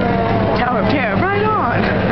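A voice with strongly sweeping pitch from about half a second in until shortly before the end, over a steady low hum.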